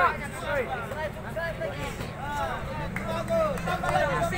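Spectators and corner men shouting overlapping calls and encouragement during a boxing bout, over crowd chatter. A low steady hum joins about three seconds in.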